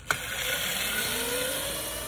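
Electric dirt bike's 48-volt 1000 W MY1020 motor whining as it pulls away under throttle, the whine rising steadily in pitch as the bike gathers speed, over a wash of noise. A sharp click just as it starts.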